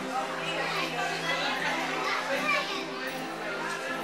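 Children's voices and chatter over steady background music, the children loudest from just after the start until near the end.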